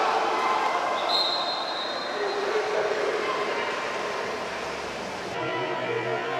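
A water polo referee's whistle blows one long steady blast about a second in, over the echoing din of an indoor pool hall with voices and splashing. Music comes in near the end.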